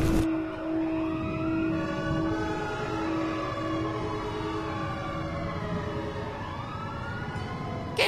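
Several emergency-vehicle sirens wailing at once, their overlapping pitches rising and falling. Under them is a steady low hum that fades out about six seconds in.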